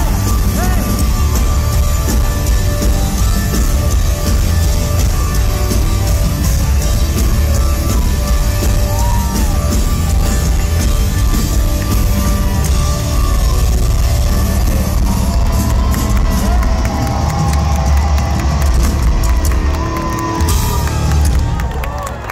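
Pop-punk band playing live through a concert PA: loud distorted guitars, bass and drums with the crowd cheering over it. The music eases off slightly near the end, as the song winds down.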